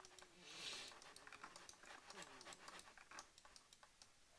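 Faint typing and scattered clicks on a computer keyboard, with a soft breath about half a second in.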